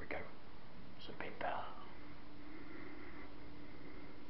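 A man whispering a few short words in the first second and a half, over a faint steady hum.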